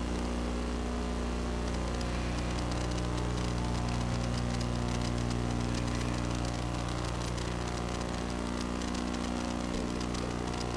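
Steady electrical hum of several low tones with hiss, from the microphone and sound-system chain. Faint light crackling ticks come in from about two seconds in.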